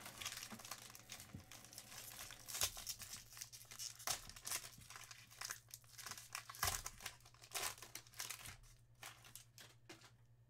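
Plastic wrapping of a 2021 Topps Inception baseball card box and pack crinkling and tearing as it is opened and handled, a faint, irregular run of quick crackles.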